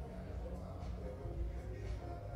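Faint, indistinct voices over a steady low background hum; no clear words.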